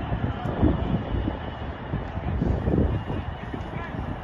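Football training on an outdoor pitch: distant voices of players over a steady low rumble, with a few short thuds.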